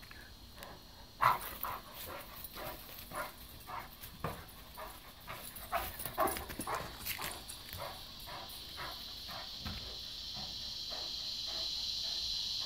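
Blue Great Dane panting after running, about two breaths a second, then easing off. A steady high insect drone sits behind it and grows louder near the end.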